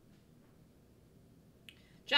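Near silence: faint room tone, with one short faint click near the end.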